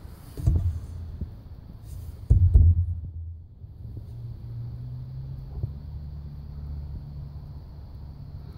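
Low rumbling thumps from the cell phone being handled and shifted on its eyepiece adapter, the loudest a little over two seconds in, followed by a steady low hum.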